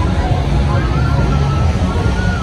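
Busy night-street noise: a party bus rumbling through the intersection amid crowd chatter, with a faint wavering melody above it from about half a second in.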